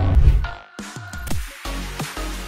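Electronic intro music in a dubstep style: a whoosh, then heavy bass hits that each drop steeply in pitch, several in quick succession. A low rumble fades out in the first half second.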